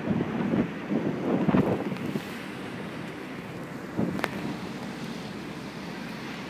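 Wind buffeting the microphone in uneven gusts, heaviest in the first two seconds and again about four seconds in. A sharp click comes just after the second gust.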